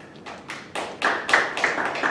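A small audience clapping: scattered, uneven hand claps that start about a quarter second in and grow louder, as at the close of a presentation.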